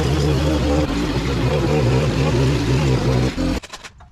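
Gas string trimmer engine running steadily at high speed while edging overgrown grass along a concrete driveway. The sound stops abruptly about three and a half seconds in.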